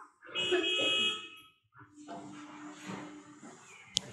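A steady, buzzer-like tone lasting about a second, followed by a fainter, lower steady hum.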